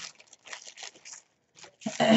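Clear plastic snowflake-print gift bag crinkling faintly as it is handled and opened, followed near the end by a loud throat clear.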